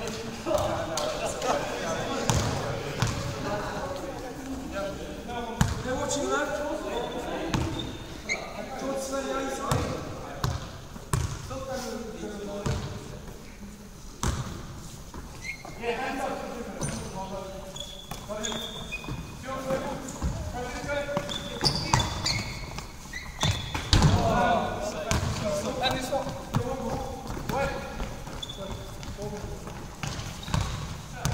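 A handball bouncing and slapping on a sports hall's wooden floor, mixed with players' running footsteps and shouted calls, all echoing around a large hall.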